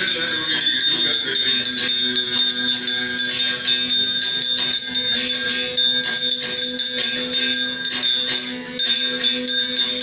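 Temple aarti music: fast, even jingling percussion over steady ringing tones.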